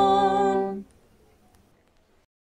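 Mixed choir holding its final chord a cappella, steady and sustained, which cuts off cleanly less than a second in, leaving only faint room noise.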